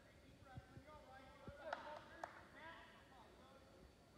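Faint voices of spectators talking, with a few soft thuds early on and two sharp slaps about half a second apart near the middle.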